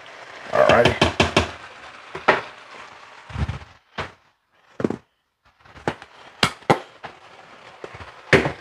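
A spatula scraping and clacking in a skillet as shredded cabbage is tossed, over a faint sizzle. It is busiest about a second in, then thins to scattered clicks and knocks.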